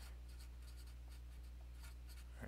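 Felt-tip marker writing on paper: faint scratching strokes as a word is written out, over a steady low hum.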